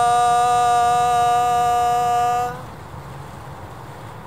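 A man's singing voice holds one long, steady final note that stops abruptly about two and a half seconds in, leaving only steady outdoor background noise.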